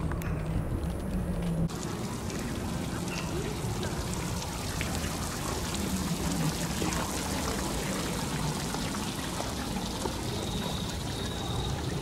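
Splash fountain jets spraying and trickling onto wet stone paving: a steady hiss of falling water that starts abruptly about two seconds in.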